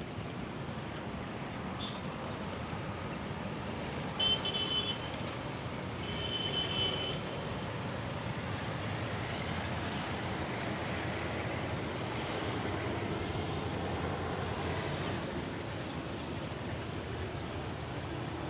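Steady outdoor background noise with no single clear source, broken by two short high-pitched sounds about four and six seconds in.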